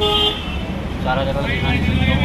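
A brief horn toot of about half a second at the start, over a low traffic rumble, followed by voices.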